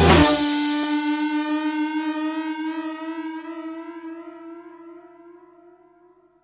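The end of a rock track: the drums and bass stop just after the start, and a single held electric guitar note with effects rings on alone with a slow waver, fading away over about six seconds.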